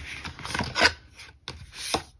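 Cardboard album packaging and a photo book rubbing and scraping as hands slide them around, with a louder scrape a little before halfway and another swelling near the end.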